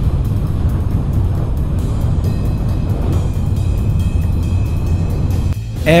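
Background music over the steady running rumble of a Shinkansen bullet train at speed, heard from inside the carriage.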